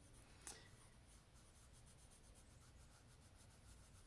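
Faint, rapid scratching of a light-blue Polychromos colored pencil worked over already-coloured paper in many quick small strokes, blending the darker blues with the lightest shade. A light tick about half a second in.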